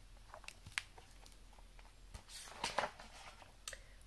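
Handling noise from a hardcover picture book being moved and lowered: a few light clicks, then a short rustle of paper about two and a half seconds in.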